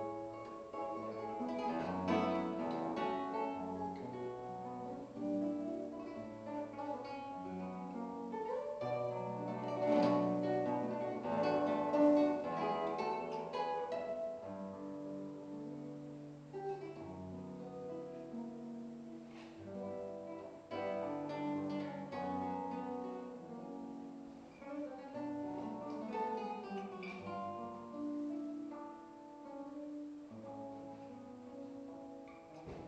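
Solo classical guitar played fingerstyle: plucked melody notes and chords over bass notes, in a continuous piece.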